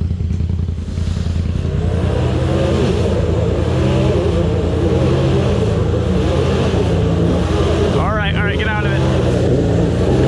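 Polaris RZR side-by-side's engine working under load up a steep, rutted dirt climb, its revs rising and falling as the driver works the throttle. A short rising whoop sounds about eight seconds in.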